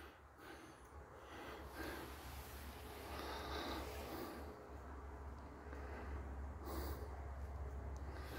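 Quiet window: a person breathing close to the microphone over a low, steady hum.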